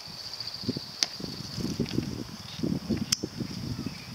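Irregular low scuffs and knocks on asphalt, with two sharp clicks about one and three seconds in, over a steady high insect-like trill.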